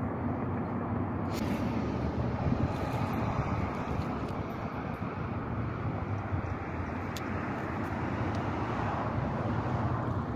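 Steady low rumbling background noise with no clear pitch, broken by a couple of faint clicks.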